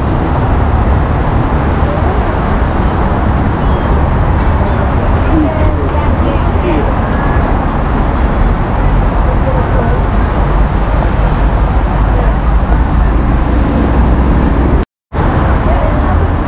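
Loud, steady road traffic noise from a busy multi-lane road, with a deep rumble, and faint snatches of passers-by's voices. The sound cuts out for a moment shortly before the end.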